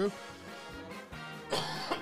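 Quiet background music, with a man coughing about one and a half seconds in.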